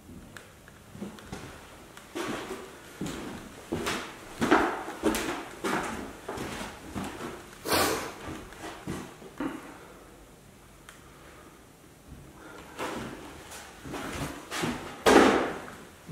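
Footsteps on an old bare wooden floor strewn with debris: irregular knocks and scuffs, at times about two a second, with a quieter pause in the middle.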